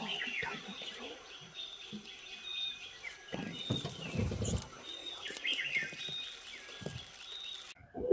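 Forest birds calling in repeated high chirping phrases, with a faint low rumbling call about three seconds in that lasts over a second and a shorter one near the end. These are taken for a distant tiger roaring again and again from a thicket where a pair is thought to be mating.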